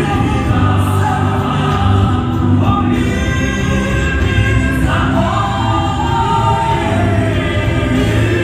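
Gospel singing by a choir of voices, continuous and loud, over a steady low backing.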